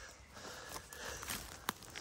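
Faint footsteps on forest litter of dry needles and twigs, with a single sharp click near the end.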